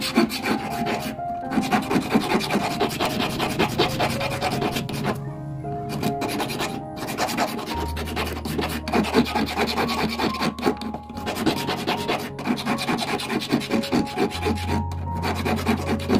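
Flat hand file rasping back and forth on a thin copper strip held against a wooden bench pin, shaping the strip's end into a taper, with a few brief pauses between runs of strokes. Background music plays underneath.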